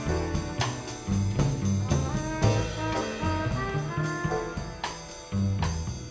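Small jazz combo playing live: a trumpet plays a melodic line over walking upright bass and drums, with regular sharp cymbal and drum hits.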